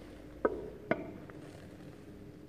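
Two light knocks of hard objects on a tabletop, about half a second apart, the second louder with a brief ring.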